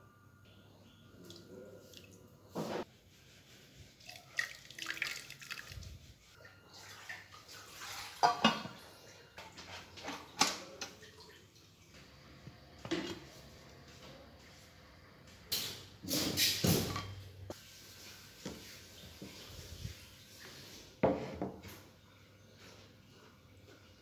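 An aluminium cooking pot clattering and knocking now and then, with water swishing in it: a dozen or so sharp strikes spaced unevenly, the loudest a third of the way in and again past the middle.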